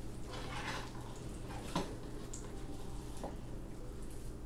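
Melted butter sizzling in a hot skillet as a tuna patty is laid in, with a sharp tap a little under two seconds in, over a low steady hum.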